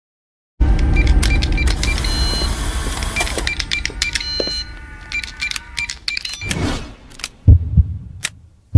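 Outro logo-animation sound effects: a sudden dense burst of electronic clicks and rapid repeated beeps over a low rumble that slowly fades, then a whoosh and a loud low heartbeat thump near the end.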